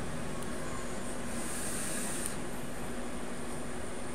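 Steady whooshing of an electric fan running, with a faint high hiss for about a second midway through as a draw is taken on a vape with a rebuildable dripping atomizer.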